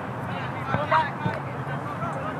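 Distant shouts from players and spectators at a soccer match, short calls over a steady open-air background noise.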